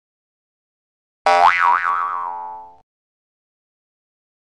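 Cartoon "boing" sound effect: one springy pitched tone, starting about a second in, whose pitch wobbles up and down twice as it fades away over about a second and a half.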